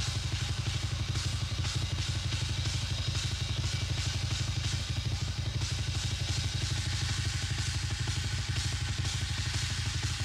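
Rock drum kit in a live drum solo: a fast, unbroken roll of bass drum strokes with regular cymbal hits over it.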